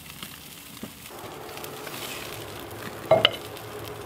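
Beef ribs sizzling on a grill over a burning hardwood fire, a steady hiss that thickens about a second in. Near the end, a brief sharp metal scrape as steel tongs take hold of the meat.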